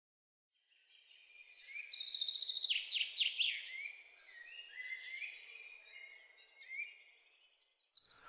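Songbirds singing: a loud run of fast trills and chirps with quick falling notes begins about a second and a half in, followed by quieter, scattered short phrases that fade out near the end.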